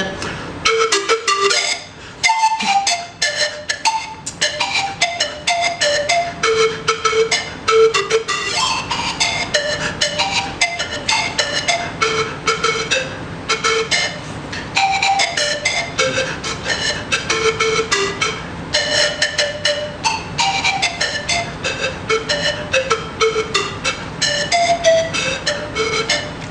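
Bamboo zampoña (Andean panpipes) tuned in D minor, played solo: a lively melody of short, breathy, separately blown notes, with a brief break about two seconds in.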